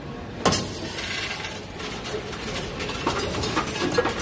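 Coinstar coin-counting machine taking in coins: a sharp clack about half a second in as the coins go in, then a steady mechanical whirr with small clinks of coins running through the sorter.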